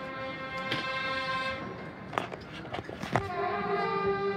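Marching band playing: the winds hold a chord, two sharp percussion hits come about two and three seconds in, and then a new, lower chord begins.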